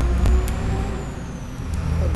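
A few separate computer keyboard key clicks as a word is typed, over a steady low hum.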